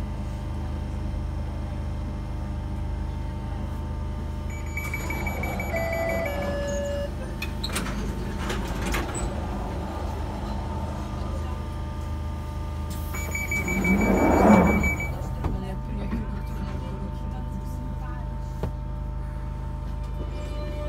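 London Underground Jubilee line train running between stations, heard from inside a carriage as a steady low rumble. Brief whining tones come twice, and the noise swells loudest about 14 seconds in.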